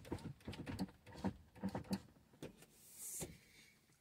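An SUV's power sunroof opening, heard faintly from inside the cabin: a few small clicks, then a short rising whir about three seconds in.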